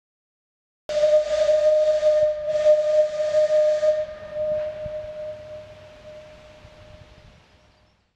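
Steam whistle blowing with a rush of steam: two long blasts on one steady note, starting about a second in. The note then dies away over the next few seconds.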